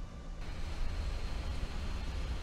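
Computer cooling fan running hard: a steady whir over a low hum, with a rushing hiss that fills in about half a second in. It is the sound of a computer labouring under a heavy processing job.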